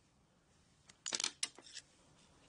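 A short run of light metallic clicks and scrapes, about a second in and lasting under a second: a screwdriver working against a Honda GX-clone carburetor's aluminium body as it pushes the brass emulsion tube free.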